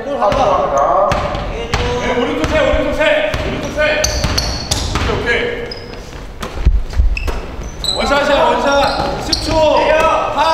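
A basketball bouncing on a hardwood gym floor as it is dribbled, with a heavier thud about seven seconds in. Players' voices call out, echoing in the large hall.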